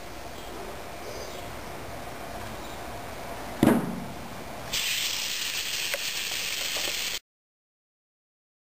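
A single knock just past the middle, then compressed air hissing steadily out of a valve on the pressure test chamber as it is let down, stopping abruptly near the end.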